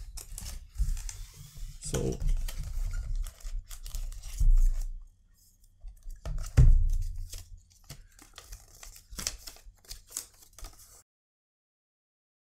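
A cardboard perfume box being opened and handled, with paper card and leaflet rustling as they are lifted out. Irregular scrapes and clicks run throughout, with two louder knocks about four and a half and six and a half seconds in. The sound cuts off suddenly about a second before the end.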